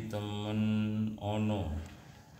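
A man's voice chanting Arabic in long, steady held notes, two phrases, the second falling in pitch and stopping just before the end.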